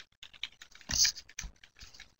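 Computer keyboard typing: a quick, irregular run of key clicks, the loudest about a second in.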